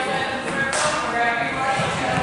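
Indistinct voices of people talking in a gymnasium, with one sharp knock a little under a second in.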